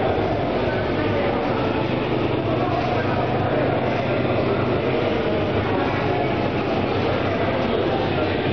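Steady low hum and rumble of a 360-degree flight simulator's drive as its enclosed pod turns over on its rotating arm.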